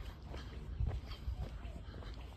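Guard dog barking faintly behind a gated home: several short, irregular barks.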